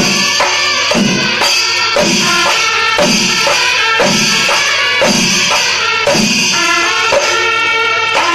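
Kerala temple percussion ensemble (melam): chenda drums beating a steady rhythm with a heavy stroke about once a second, while brass kombu horns sound held, buzzing notes over the drumming.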